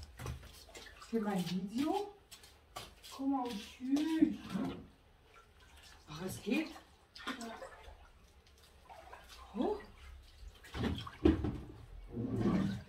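Pool water splashing and sloshing as a net is dipped and dragged through it, with short vocal sounds now and then between the splashes.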